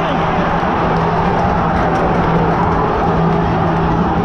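Large football crowd singing a chant together in the stands: many voices holding a sustained low note over a dense mass of shouting, loud and steady.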